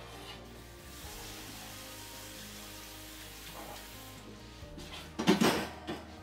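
Cold kitchen tap running into a sink, an even hiss, as blanched kale is rinsed to cool it, over quiet background music. A brief louder burst comes near the end.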